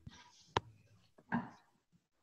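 A single sharp click about half a second in, then a brief softer noise about a second later, both faint.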